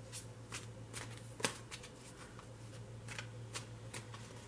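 A tarot deck being shuffled by hand: soft, irregular slaps and clicks of cards, the loudest about one and a half seconds in.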